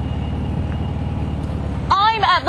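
Motorcycle trike engine running at low speed, a steady low rapid pulsing, with a voice starting to speak at the very end.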